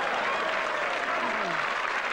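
Studio audience laughing and applauding after a punchline.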